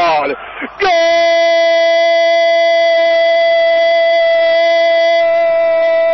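Radio football narrator's long, drawn-out goal cry of "gol", breaking off briefly for a breath about half a second in, then held at one steady pitch for several seconds, in the narrow sound of an AM radio broadcast.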